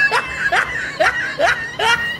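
A man laughing in short, high-pitched bursts, repeated about twice a second.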